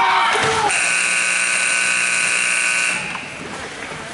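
Arena scoreboard horn sounding one steady, buzzing note for about two seconds, starting just under a second in, then cutting off.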